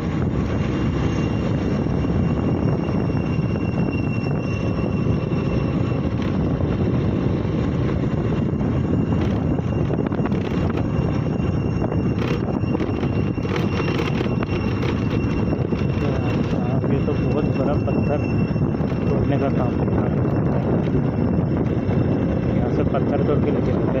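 Motorcycle engine running steadily while riding, mixed with wind rumble on the microphone.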